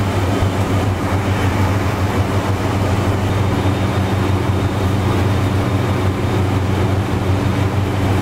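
Loud, steady low machine hum with a few steady overtones, from motor-driven food-stand equipment running without a break.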